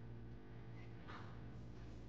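Faint room tone: a steady low hum, with one short soft rush of noise about a second in.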